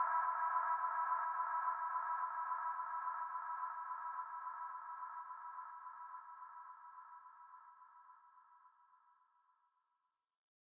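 End of a house track: a held electronic synthesizer chord of several steady tones, fading out evenly until it dies away just before the end.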